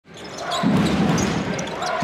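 Arena sound from a live basketball game: a steady crowd din with a basketball being dribbled on the hardwood court. The sound fades in over the first half second.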